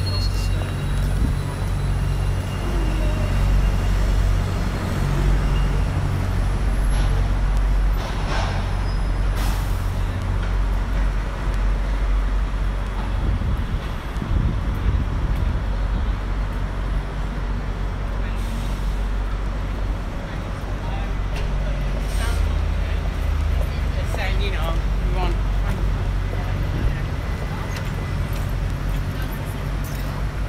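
Road traffic with double-decker bus engines running in a steady low rumble, broken by a few short hisses.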